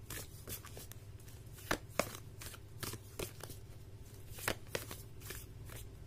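A deck of round tarot cards being shuffled by hand, the cards clicking and slapping against each other in quick, irregular flicks, a few per second.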